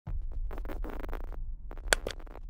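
Electronic glitch logo sting: stuttering, scratch-like digital noise over a steady low rumble, with a short gap and a single loud sharp hit just before the end.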